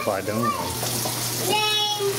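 A woman talking, with a drawn-out vowel near the end, over a steady background hiss and a low hum.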